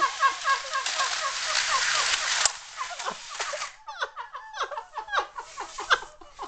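Rapid high-pitched laughter, a string of short giggles each falling in pitch. For the first two and a half seconds a steady hiss runs underneath, then it stops abruptly with a click.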